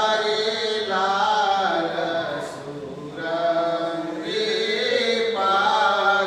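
A man singing a Gujarati devotional song (kirtan) in long, drawn-out notes that bend slowly in pitch, with a short pause about halfway through.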